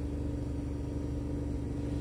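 Steady machine hum with one constant tone over a low rumble.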